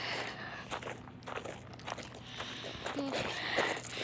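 Footsteps crunching on a gravel trail, irregular steps of someone walking, with a short voice sound about three seconds in.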